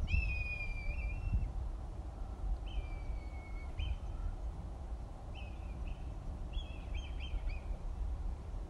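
A bird calling overhead: a long, slightly falling whistled note, a second one a couple of seconds later, then shorter notes and a quick run of them near the end, over a steady low rumble.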